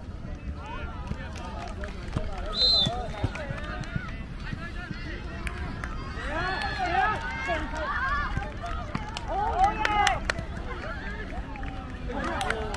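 Voices of players and spectators calling out across an outdoor youth football pitch, overlapping and without clear words, louder about six and ten seconds in.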